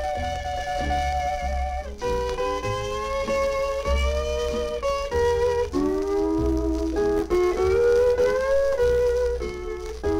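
Instrumental break of a western country song played from an old 78 rpm record: a steel guitar carries a gliding, sustained melody over bass and rhythm accompaniment.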